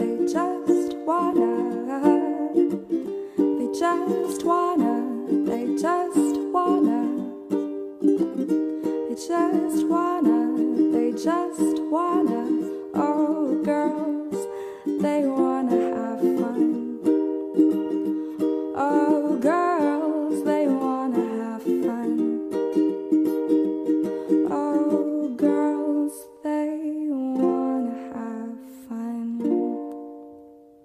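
Instrumental acoustic music: a plucked-string instrument picks a melody over chords, then settles on a held chord that rings out and fades near the end.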